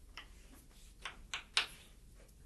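Footsteps on a hard floor: a few sharp, irregular taps, the loudest about a second and a half in.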